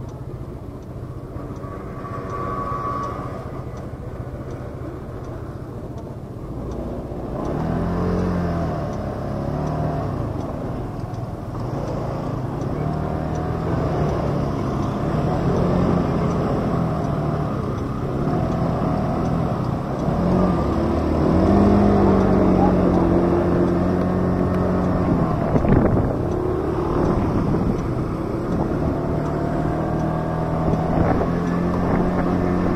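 Motor vehicle engine running. It grows louder about seven seconds in, and its pitch steps up and down as it drives.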